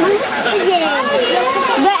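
Several children's voices talking over one another.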